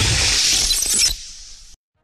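Sound effect at the end of the programme's animated logo sting: a loud hiss that fades away after about a second and stops shortly before the end.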